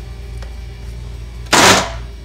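A short, loud plastic clatter-scrape, once, as the lid is pushed down and seated on the blender jar.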